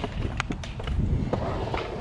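Skatepark background noise of wheels rolling on concrete, with a few sharp clicks.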